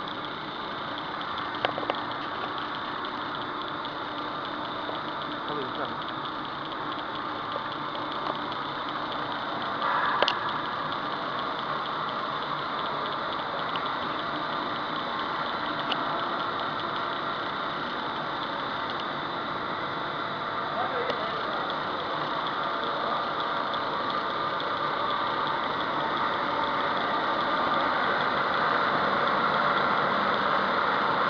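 Polyethylene foam sheet extrusion line running: a steady mechanical drone with a faint steady hum. There is a brief knock about ten seconds in, and the noise grows slightly louder toward the end.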